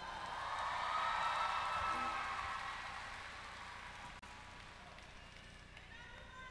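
Quiet gap between songs in a music compilation: the last notes of a song die away, leaving a faint, even hiss-like noise that swells about a second in and then slowly fades.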